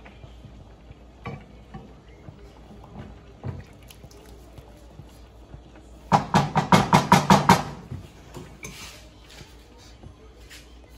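Wooden spoon stirring cream sauce in a nonstick frying pan: a few scattered scrapes and knocks, then about six seconds in a fast run of some nine loud strokes of the spoon against the pan, lasting about a second and a half.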